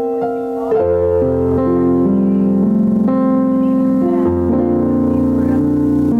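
Electric keyboard playing slow, held chords. Struck piano-like notes give way about a second in to a fuller sustained sound with low bass notes underneath.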